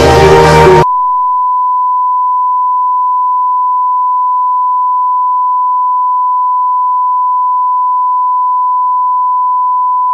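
Live concert music cuts off abruptly just under a second in, replaced by a steady, pure single-pitch test tone: the standard line-up reference tone that accompanies SMPTE colour bars on a video tape.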